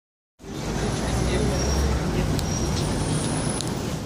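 Street traffic noise with a low engine hum, under the voices of a crowd of people talking.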